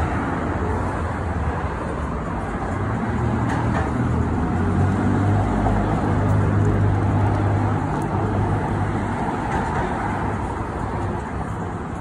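Street traffic: passing motor vehicles with a low engine rumble that builds about three seconds in, is loudest in the middle, and eases off toward the end.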